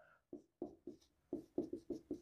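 Whiteboard marker squeaking across the board in a quick series of short strokes as letters are written.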